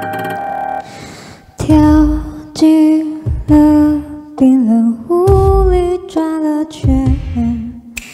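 A woman singing a slow ballad into a handheld microphone, in short held phrases over music, one note wavering. An instrumental note fades out first, and she starts about one and a half seconds in.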